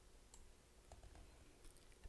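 Near silence: room tone with a faint low hum and a few very faint ticks.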